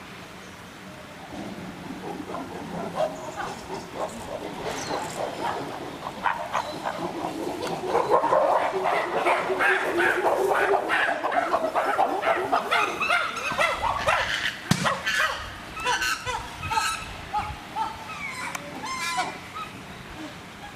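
Chimpanzees calling. A chorus of calls starts low, builds up and is loudest about eight to thirteen seconds in, then breaks into shorter calls mixed with sharp knocks.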